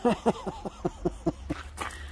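A man laughing: a quick run of short 'ha' pulses that fall in pitch, followed by a short breathy hiss near the end.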